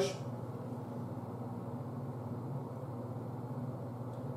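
Steady low hum of room tone with no distinct events.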